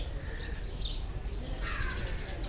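Birds calling in short high calls, with a louder call near the end, over a steady low background noise.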